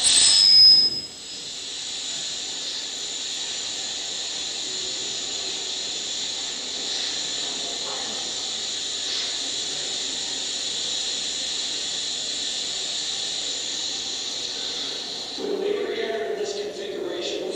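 Soundtrack of a projected video playing over room speakers: a brief loud high squeal about half a second in, then a steady high-pitched hiss.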